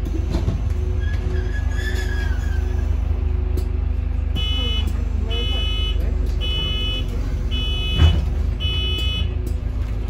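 Interior running sound of an Alexander Dennis Enviro400 MMC Volvo B5LH hybrid double-decker bus heard from the upper deck: a steady low rumble with a faint steady hum. From a little before halfway, five short electronic beeps sound about one a second, and a single thud comes near the end.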